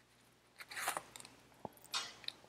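Faint handling of tarot cards: a brief rustle about half a second in, a single sharp click, and another short rustle near the end.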